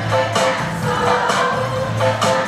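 A children's choir singing over an accompaniment with a steady low bass line.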